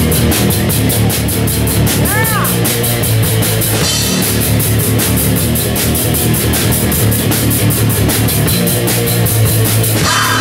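Heavy metal band playing live: distorted electric guitar, bass guitar and a drum kit, the drums keeping up rapid, even hits. About two seconds in, a short squeal rises and falls in pitch over the playing.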